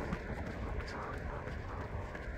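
Wind rumbling on a handheld phone's microphone while running, with the runner's footfalls.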